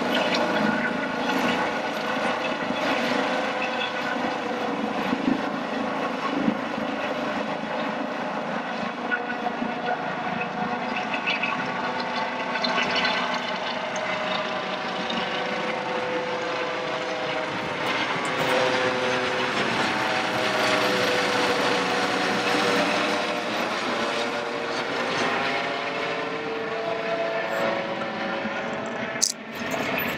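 Eurocopter EC135 air ambulance helicopter climbing away after takeoff: steady rotor and turbine noise whose tones slowly glide in pitch as it moves off.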